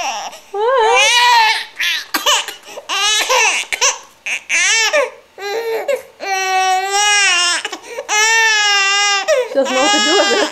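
Infant of about two and a half months crying in a series of high-pitched wails, shorter and choppier in the middle, with two long held wails of about a second each near the end. It is the crying of a baby refusing her first spoonfuls of rice cereal.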